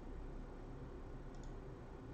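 Low, steady room hum with a couple of faint, quick clicks about one and a half seconds in.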